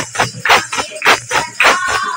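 Women singing a Hindu devotional bhajan in chorus, keeping time with steady hand clapping at about two claps a second.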